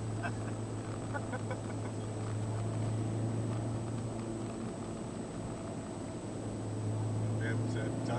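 Toyota MR2 Turbo's turbocharged four-cylinder engine heard from inside the cabin, a steady drone as the car drives at an even pace, with road and tyre noise.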